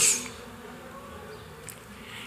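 Pause between spoken sentences: faint room tone with a low, steady hum and a faint tick near the end.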